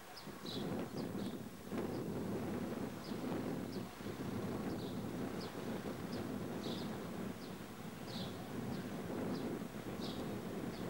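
Freightliner Class 66 diesel-electric locomotive, with its two-stroke V12 EMD engine, approaching on the line with a steady low rumble that swells in about a second in. Short bird chirps come through high above it.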